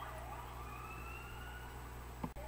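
A faint emergency-vehicle siren from outdoors: one slow wail rising in pitch over about a second.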